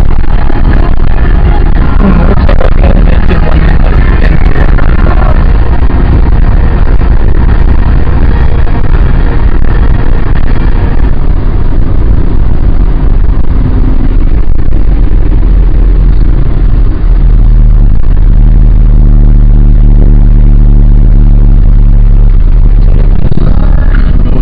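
Honda Civic EG8 sedan driven hard, heard from inside the cabin: engine and road noise loud enough to overload the microphone. Music plays over roughly the first half.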